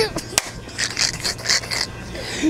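A sharp click, then a few short breathy bursts of laughter.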